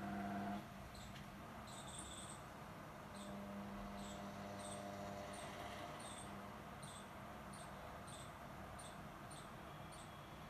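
Short high-pitched chirps repeating about once or twice a second over a low electrical hum. The hum is strongest at the start, cuts off about half a second in, and comes back more faintly for a few seconds in the middle.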